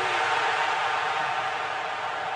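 Large stadium crowd cheering a goal just scored, a steady wash of crowd noise that eases slightly over the two seconds.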